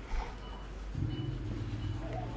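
A motor vehicle engine running with a steady low hum that sets in about halfway through, over a faint short high beep repeating a little under twice a second.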